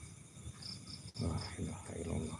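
Crickets chirping, a run of short high pulses at about five a second, with a low voice murmuring in the second half.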